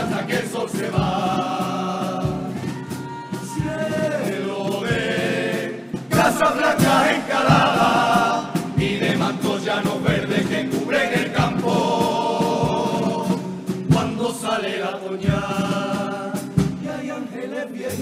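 Male carnival chirigota chorus singing a song together, accompanied by acoustic guitar and bass drum strokes.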